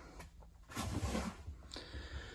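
Faint rustling and handling noise from someone moving about inside a small enclosed cargo trailer, a soft burst lasting about a second near the middle.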